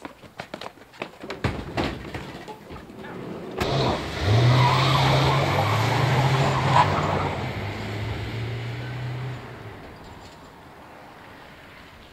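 Scuffling knocks, then a sharp slam about three and a half seconds in, as a Mercedes-Benz Sprinter van's door shuts. The van's engine then runs hard as it pulls away, with tyre noise, and fades as it drives off down the street.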